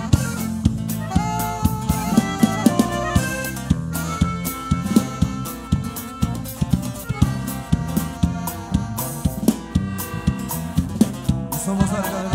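Live band playing the instrumental opening of a song: saxophone over drum kit, bass and guitar, with a steady beat.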